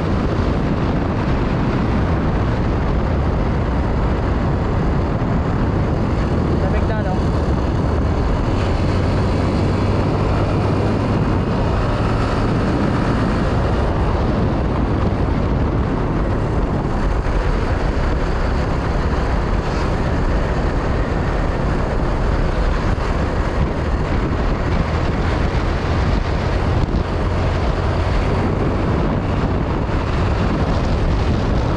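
Motorcycle engine running at a steady cruise, buried in a continuous rush of wind on the helmet microphone.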